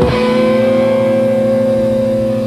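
Live rock band: an electric guitar holds one long distorted note over a steady drone, with no drumbeat.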